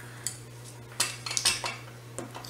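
Light clicks and clinks of small hard fly-tying tools being handled, a single click early and a quick cluster of them about a second in, over a faint steady hum.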